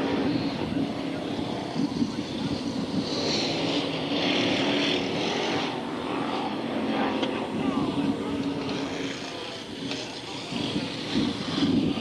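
Several BriSCA Formula 1 stock cars' V8 engines racing around an oval at once, a steady, continuous engine drone.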